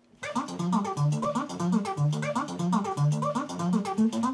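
LEMUR GuitarBot, a robotic guitar with motor-driven picks on each string, starting to play about a quarter second in: a fast riff of rapid picked notes that repeats over and over.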